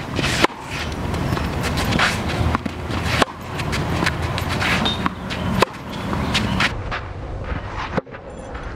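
Tennis racket hitting the ball during groundstroke practice, a few sharp strikes, with shoes scuffing and sliding on the court between them.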